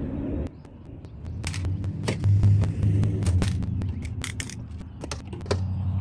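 A butter knife tapping and prying at the locking slots of a plastic screwless RV door-window frame, making an irregular run of sharp clicks and taps for about four seconds. A steady low rumble runs underneath.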